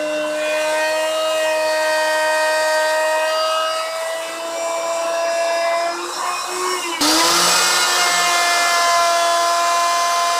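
Electric router running at speed as it cuts a shallow inlay recess in a cherry board: a steady high whine that wavers slightly in pitch midway, then turns suddenly louder and harsher about seven seconds in.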